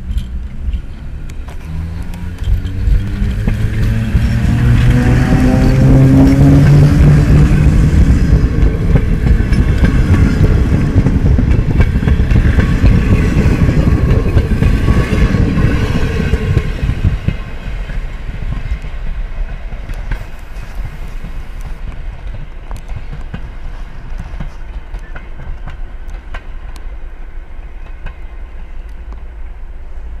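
ET22 electric locomotive pulling a passenger train away from the station: a motor hum that rises in pitch as it gathers speed, then the rumble and clicking of wheels over rail joints as it and its coaches pass close by. The sound is loudest as the train passes and falls to a steadier, quieter rumble after about seventeen seconds as the train moves off.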